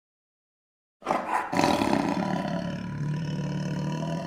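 A loud roar starts suddenly about a second in and holds a steady pitch for about three seconds.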